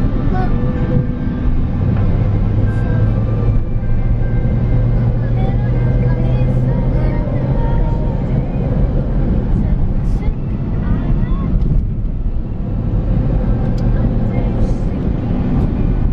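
Steady low rumble of a car being driven, heard inside the cabin, with faint voices underneath.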